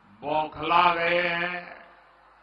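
Speech only: a man orating in a slow, drawn-out, chant-like delivery, one phrase ending on a long held vowel, echoing through public-address loudspeakers.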